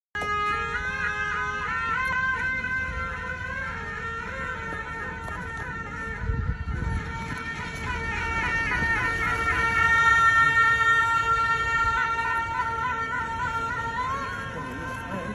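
Wind instruments playing long held notes together, the pitch wavering and ornamented, typical of monastic reed horns at a ceremonial welcome. The playing grows loudest after about ten seconds. A brief low rumble sounds around six seconds in.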